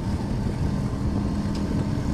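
Auto-rickshaw's small engine running steadily as it drives along, a constant low drone.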